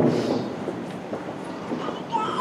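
Hoofbeats of a horse cantering on indoor arena footing: irregular dull thuds over the hall's even background noise.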